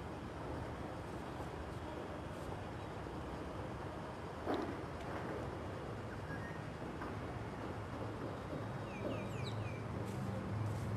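Outdoor ambience with a steady low rumble, a brief knock about halfway through, and a bird chirping several times in quick short falling calls near the end.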